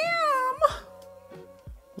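A woman's drawn-out, sing-song exclamation on a long vowel, gliding up and down in pitch for about the first half second. After it, only soft background music.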